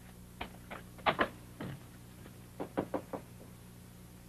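Knocking on a door: several raps, a short pause, then a quick run of four raps.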